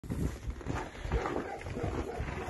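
Irregular rustling and low thumps as a draft-cross foal moves about and noses in straw bedding.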